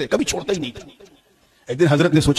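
A man's voice speaking into a microphone. It breaks off about halfway through and resumes near the end.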